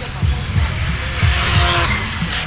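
Radio-controlled car sliding on asphalt, its tyres hissing, loudest a little past the middle, with faint motor tones over low thumping.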